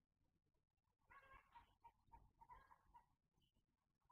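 Near silence. A few faint pitched animal calls with overtones are heard between about one and three seconds in.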